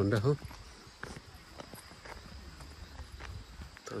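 Footsteps on a stone-paved path, heard as faint scattered taps.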